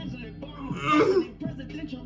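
A man clears his throat once, loudly, about a second in, over a hip hop track with a steady beat and bass.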